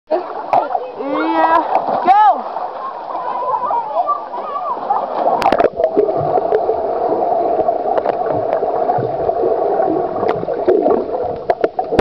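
Voices above the water of an outdoor swimming pool, then a splash about five and a half seconds in as the camera goes under, followed by steady muffled underwater rushing and bubbling with low thuds.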